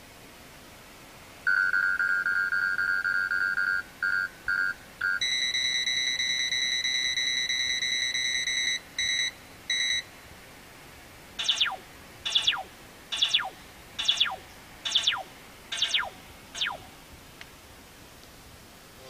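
Stinger VIP radar detector sounding its alarms: a steady high beep that breaks into three short beeps, then a higher steady tone that breaks into two short beeps, while its screen shows a Ka-band radar detection. Then seven quick falling electronic sweeps, about one every three-quarters of a second, as the unit switches to a laser alert.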